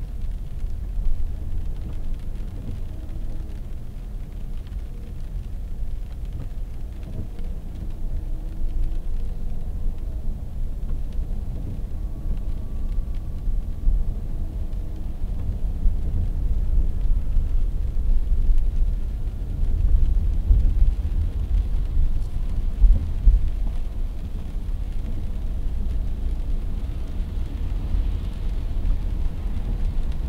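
Low, steady rumble of a car driving slowly on a wet road, heard from inside the cabin through a dashcam microphone. It grows a little louder past the middle as the car picks up speed.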